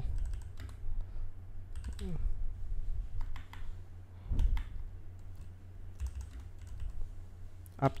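Computer keyboard being typed on, a few scattered keystrokes with pauses between them, over a low steady hum.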